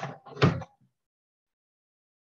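A brief rustle, then a single thump about half a second in, as someone moves and bumps against the desk or laptop right by the laptop microphone.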